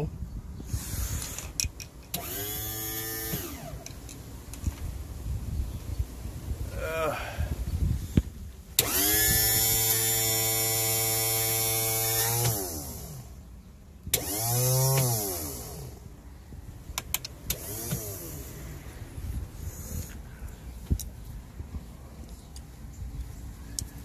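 Electric motor of a Mercury outboard's hydraulic power-trim pump, wired straight to the battery through jumper leads. It makes a few short whirring runs, then a longer steady run of about three and a half seconds that rises in pitch as it starts and drops as it stops, then another short run. The owner thinks the trim system still needs bleeding of air.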